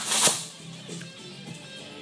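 Heavy steel lifting chains clank and rattle in a brief loud burst at the start as they are hauled up onto the shoulders. Background music plays throughout.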